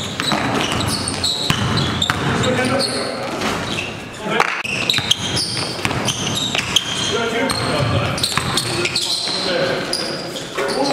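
A basketball bouncing repeatedly on a gym floor during live play, with sneakers squeaking and players' voices calling out in the hall.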